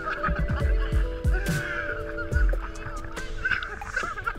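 Sustained background music chords over water sloshing and gurgling around a camera dipping in and out of the sea.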